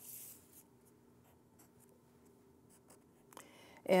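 Marker pen drawn along a ruler on paper: one short scratchy stroke at the start, then a few faint handling clicks as the ruler is lifted away.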